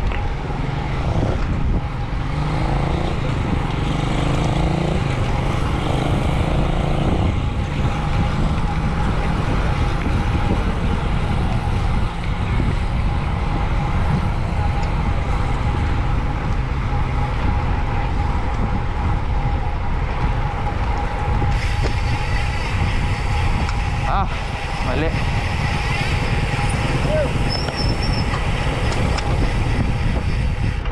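Wind rushing over the microphone of a camera riding on a moving road bike, a steady low rumble throughout.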